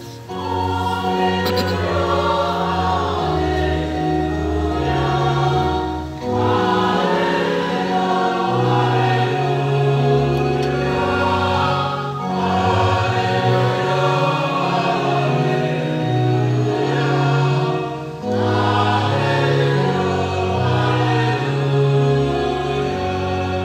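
Church choir singing a responsorial psalm setting over sustained electronic keyboard chords, in phrases about six seconds long with short breaks between them.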